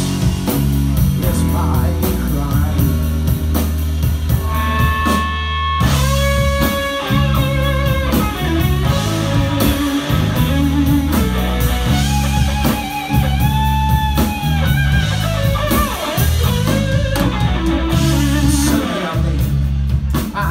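Live rock band playing an instrumental break: electric guitar lead with long held and bent notes over bass guitar and drums.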